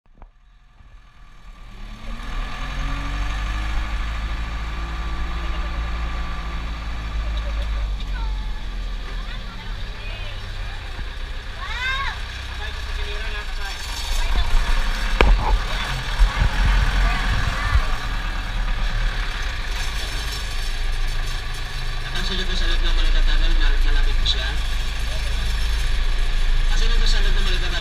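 Low, steady rumble of a vehicle driving through a tunnel, fading in over the first two seconds. A few brief high squeaks come about twelve seconds in, and a sharp knock a few seconds later.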